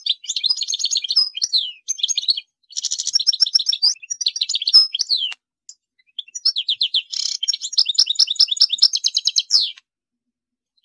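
European goldfinch singing: fast, high twittering trills and sweeping notes in three long phrases, with short pauses between them.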